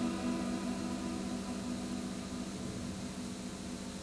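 The last sustained chord of an ambient electronic piece dying away under hiss: the higher notes fade out within the first second, and a low steady drone lingers, slowly getting quieter.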